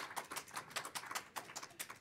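Congregation applauding lightly: a dense, irregular patter of hand claps, fairly faint.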